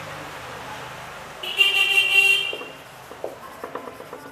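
A vehicle horn sounds once, a steady note of about a second, over a faint hum of traffic. Near the end comes a scatter of small clicks from a marker writing on a whiteboard.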